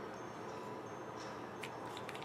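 Low steady room noise with a few faint clicks past the middle.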